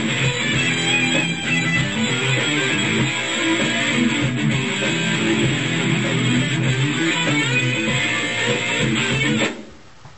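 Electric guitar playing a short heavy-metal riff over a programmed rock drum beat, with the guitar put through compression and chorus effects as it plays; the music stops about half a second before the end.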